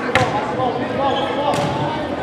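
A volleyball being struck during a rally: a sharp smack just after the start, the loudest sound, and a second one about a second and a half later, echoing in a large gym. Players' voices call out underneath.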